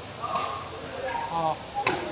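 Two sharp smacks of a sepak takraw ball being kicked, about a second and a half apart, over voices from the crowd.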